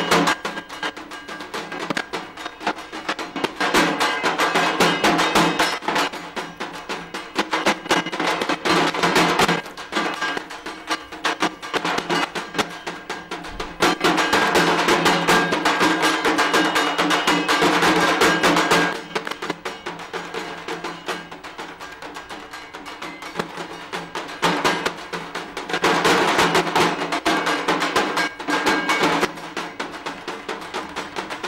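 Dhak drums beaten with sticks in a fast, dense rhythm, swelling louder in three stretches and easing between them.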